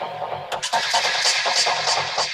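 Psytrance in a continuous DJ mix. A noisy build-up fades out, and about half a second in the beat comes back with evenly spaced hi-hat hits over a pulsing bass line.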